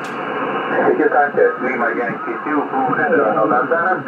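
Single-sideband voice received on the 20-metre amateur band through an Icom IC-756PRO2 transceiver: a contest station calling over steady band hiss, in narrow, telephone-like radio audio. A brief click right at the start.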